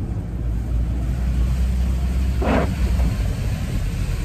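Steady low rumble inside a car's cabin, with one short sound about two and a half seconds in.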